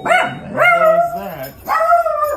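Small dog barking at the doorbell in two drawn-out, loud barks, the first about a second long and the second shorter near the end.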